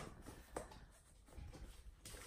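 Near silence with a few faint taps and rustles of hardcover books being handled, one short tap about half a second in.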